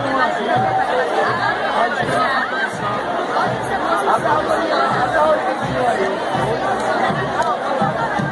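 Dense chatter of a large street crowd, many voices talking and calling at once, with a low regular beat about twice a second underneath.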